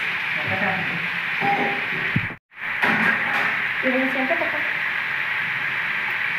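Chopped onion and tomato sizzling in oil in a pan: a steady hiss, cut off by a short gap of silence about halfway through.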